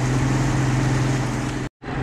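Boat engine running steadily under way at trolling speed, a low even hum with wind and water noise over it. The sound drops out for a moment near the end.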